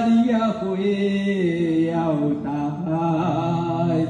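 A voice chanting in long, held notes that step and glide slowly down in pitch, without clear words.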